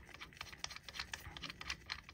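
Light, rapid clicking and ticking of small metal parts as a gauge is threaded by hand into the gauge port of an airgun's aluminium air reservoir, with nitrile-gloved fingers handling the parts.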